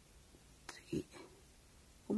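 A brief soft whispered vocal sound about a second in, against quiet room tone.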